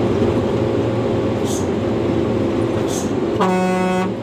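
Hino 500 truck's diesel engine running steadily, heard from inside the cab while driving, with a single horn blast about three and a half seconds in, lasting about half a second.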